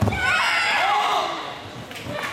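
A thud as two karate fighters clash in a kumite exchange, followed by about a second and a half of high-pitched shouting from several overlapping voices, fading out near the end.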